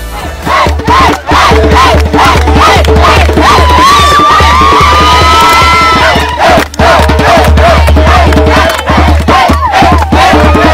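Loud music with a heavy bass, with a crowd of young people shouting and yelling over it in many short calls.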